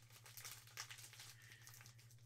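Faint crinkling of a foil trading-card pack wrapper as it is handled and opened by hand, in small irregular crackles.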